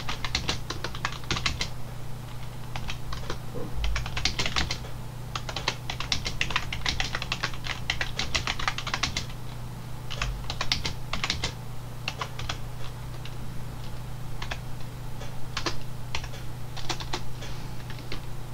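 Typing on a computer keyboard: quick runs of keystrokes broken by short pauses, over a steady low hum.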